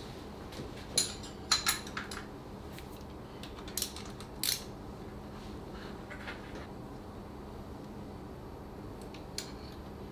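Steel hand tools clinking on an engine's timing-belt tensioner: a wrench and Allen key fitted to the tensioner screw and eccentric and turned, giving a handful of sharp metallic clicks in the first five seconds. A faint steady hum underneath.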